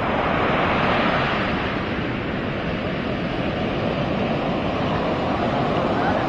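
Pacific Ocean surf breaking and washing up a sand beach, a steady wash of noise.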